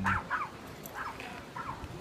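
A dog yipping and whining: about five short, high calls spread over two seconds.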